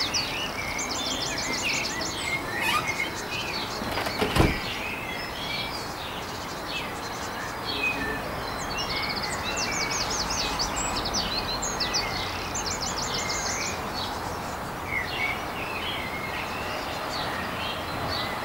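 Several small songbirds chirping, with quick trills of repeated notes now and then, over a steady background hiss. One sharp knock sounds about four seconds in.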